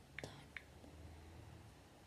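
Near silence: faint room tone with two or three short, light clicks in the first second.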